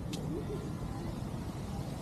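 Low, steady outdoor background rumble with a single short click just after it begins.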